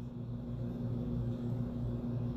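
A steady low hum with no change in pitch or level.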